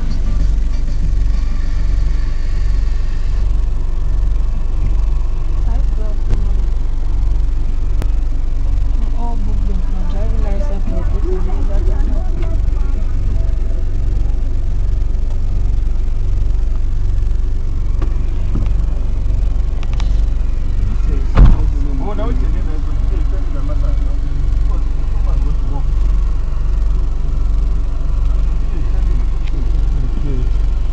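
Bus engine idling with a steady low rumble, heard from inside the cabin, with indistinct voices over it and one sharp knock about two-thirds of the way through.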